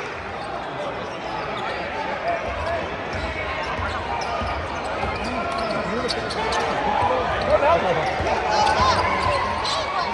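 Basketball dribbled on a hardwood court over the continuous chatter of a spectator crowd in a large hall, with voices growing louder in the second half.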